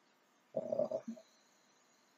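A man's brief voiced hesitation sound, a short 'mm' lasting about half a second, starting about half a second in; otherwise near silence.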